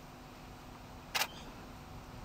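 A single camera shutter click a little over a second in, short and sharp.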